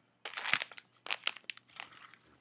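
Ritz crackers box and its packaging being handled quickly: a run of crinkles and rustles.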